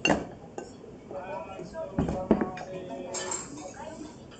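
Spoon clinking against a ceramic ramen bowl: one sharp clink at the start and two more about two seconds in.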